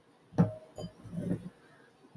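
Fingers breaking up bud and packing it into a bong bowl: one sharp click about half a second in, then a smaller tick and soft handling sounds.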